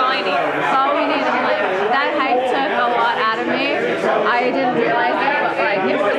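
Crowd chatter: many voices talking over one another at once, a steady hubbub in a crowded taproom.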